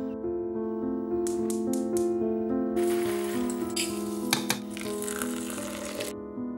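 Water poured from a kettle into a glass French press onto coffee grounds: a steady splashing pour that starts about halfway through, with two light clicks during it, over solo piano music. Just before the pour come about five quick, short scraping strokes.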